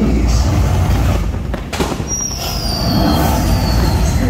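Heavy low rumble of city traffic under a fireworks display, with a sharp bang about a second and a half in. A high squeal follows, sliding slowly down in pitch over the second half.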